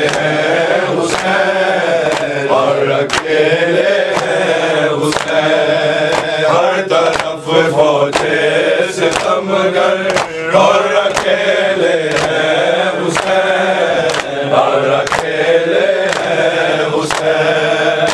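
Men chanting an Arabic noha lament for Hussain, with hand strikes on their chests (matam) about once a second keeping time.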